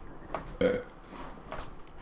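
A man's short, wordless vocal sound a little past half a second in, with a few faint clicks around it.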